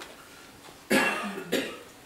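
Someone coughing twice in quick succession, starting about a second in, each cough sudden and sharp.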